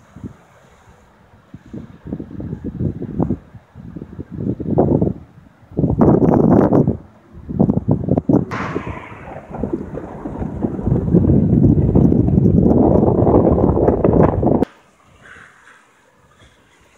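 Gusty wind buffeting the microphone in irregular blasts, swelling into a long steady gust in the second half, then cutting off suddenly near the end.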